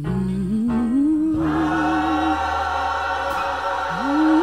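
Slow choir song in a gospel style: a held, wavering vocal melody over sustained chords that fill out about a second and a half in.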